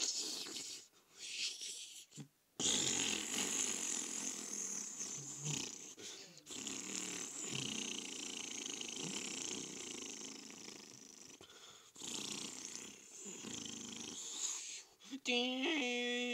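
Cartoon Donald Duck snoring in his sleep: long rasping breaths with short breaks, ending in a held pitched note near the end.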